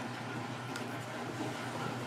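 Steady low background hum of a small room, with no distinct event.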